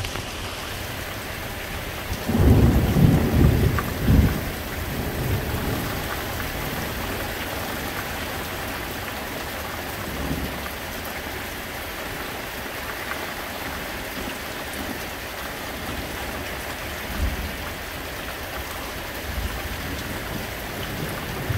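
Steady rain falling, with a loud roll of thunder about two seconds in that peaks several times over two seconds before fading. Fainter low rumbles of thunder come again around the middle and near the end.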